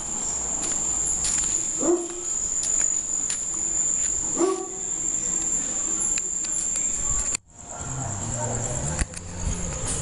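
Crickets trilling in one steady high note, with two short voice-like calls a couple of seconds apart. The trill breaks off abruptly about seven seconds in.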